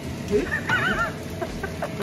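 A person's brief high-pitched warbling vocal sound, wavering up and down in pitch about half a second in, with a few short vocal sounds around it.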